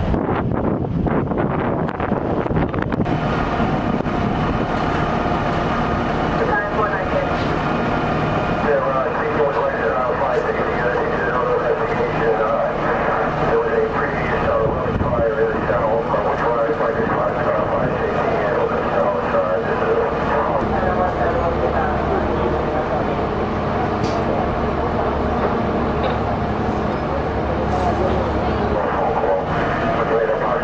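Fire trucks' diesel engines running with a steady low rumble, with indistinct voices over it.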